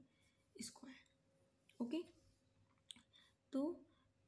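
Mostly quiet pause in a woman's speech: a breath and a soft spoken 'okay', with one faint short click just before the end.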